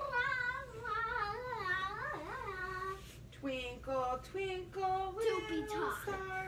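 A child singing in a high, wavering voice: one long, wobbling phrase for about the first three seconds, then a string of shorter held notes.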